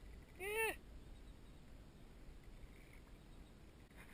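A young person's short, high-pitched vocal exclamation about half a second in, its pitch rising then falling. After it there is only faint, steady outdoor background.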